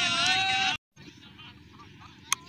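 Livestock bleating: one long, quavering call that cuts off abruptly under a second in, leaving only faint background noise.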